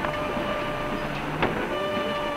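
The film's orchestral score coming in, with sustained instrument notes that change to a fuller chord near the end, over the steady hiss of an old soundtrack. A single click about one and a half seconds in.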